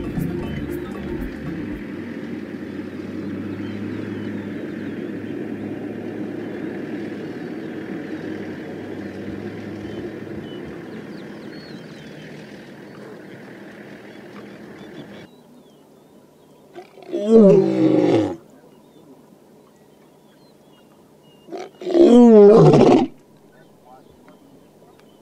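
Male lion roaring: two long, loud calls a few seconds apart in the second half, each bending up and down in pitch. Before them a steady background sound fades and then cuts off abruptly about two-thirds of the way in.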